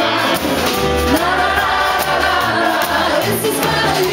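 A live rockabilly band playing, with a woman singing the lead over a steady, slapped upright double bass.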